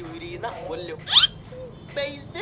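A cartoon voice speaking Hindi in short bits, broken about halfway through by one quick, loud upward squeal.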